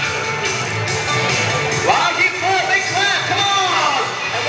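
Music playing loudly, with a high voice gliding and bending over it in the second half.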